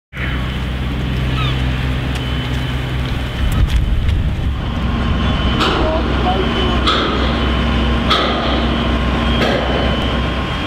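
Construction-site machinery running steadily with a low engine hum, with a sharp knock repeating about every second and a quarter from about halfway in.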